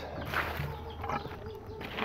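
Plastic bucket being rinsed out with seawater: faint water sloshing with a few light plastic knocks.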